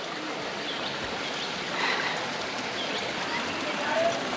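Steady rushing of a shallow river flowing through a gorge, with faint voices in the distance.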